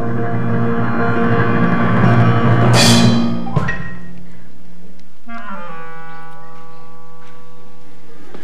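Pit orchestra underscore: a held chord over a timpani roll swells up to a cymbal swell about three seconds in and cuts off sharply. After a short gap a softer sustained chord enters, sliding down a step as it settles.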